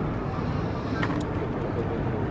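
Steady outdoor city background noise, a low traffic rumble.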